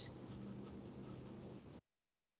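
Faint room tone with a low hum from an open microphone in a pause between words. Near the end it cuts off abruptly to complete silence, as a call's noise suppression gates the microphone.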